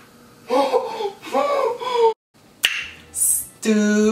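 A man's voice with gliding, wavering pitch, not words, then a short dropout, a single sharp click, a brief hiss and his voice starting again near the end.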